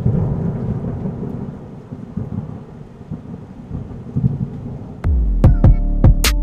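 A sudden rumbling crash that fades away over about five seconds, like a thunder transition effect. About five seconds in, electronic music with a hard, punchy beat starts.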